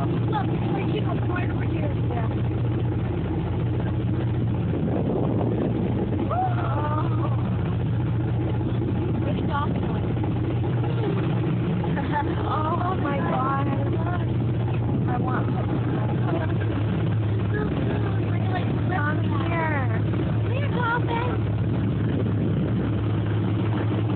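A speedboat's engine running steadily, a constant low hum, with indistinct passengers' voices talking and exclaiming over it at times.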